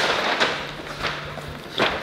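Handling and movement noise: a sharp click at the start, then rustling and a few soft knocks, over a low steady hum that cuts off near the end.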